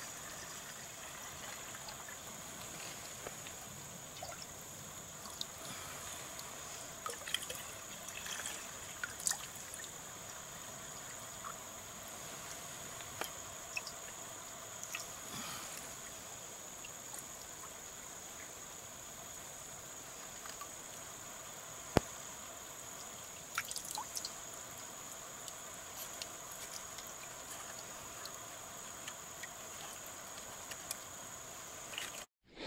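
Thin trickle and dribble of water as creek water is run through a HydraPak filter into a bottle, with a few small clicks and one sharp click about two-thirds of the way through.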